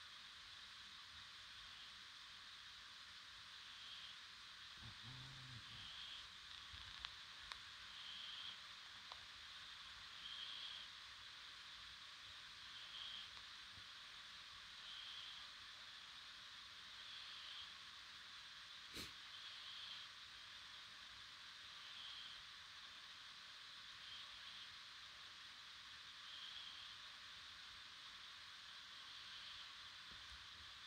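A sleeping ginger cat's faint, wheezy breathing, one breath about every two seconds, over a steady hiss of pouring rain. There is a soft knock about five seconds in and a single sharp click near nineteen seconds.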